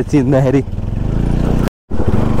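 Bajaj Pulsar NS 200 single-cylinder motorcycle engine running steadily while riding, heard from the rider's seat. It drops out to a brief silence near the end.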